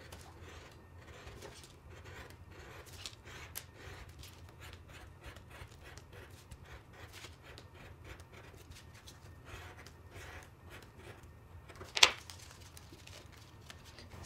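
Craft knife cutting small holes in black card on a cutting mat: a run of faint, short scratching strokes, with one sharp click near the end.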